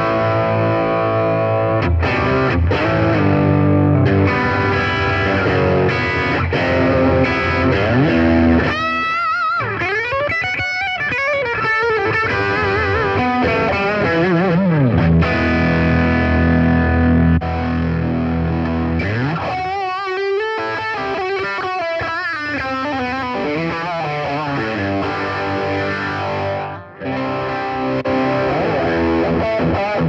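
Electric guitar played through a Zoom G3Xn multi-effects processor: sustained chords and notes with heavy effects, broken twice by warbling, swooping pitch sweeps, about a third and two-thirds of the way through.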